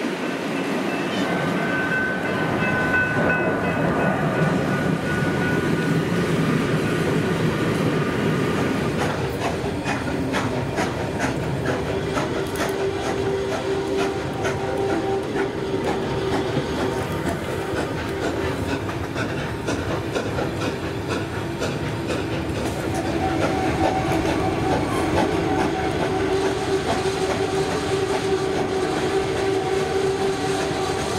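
Passenger train running along at speed, heard from on board: a steady wheel-and-rail rumble, with rhythmic clicks over rail joints from about a third of the way in and long steady tones held over the noise.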